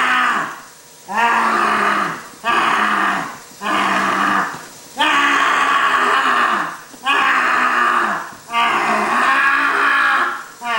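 A voice giving loud monster roars and shrieks, about seven in a row, each lasting a second or so and dropping in pitch at its end.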